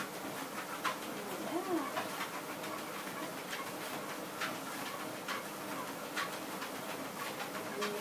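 A motorised treadmill running under a person and a large dog walking together on the belt, with footfalls tapping in a steady rhythm a little faster than once a second over the running noise.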